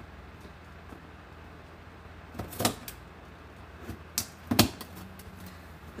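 Scissors working at the packing tape of a cardboard box: a few sharp clicks and knocks, the loudest about four and a half seconds in, over a steady low hum.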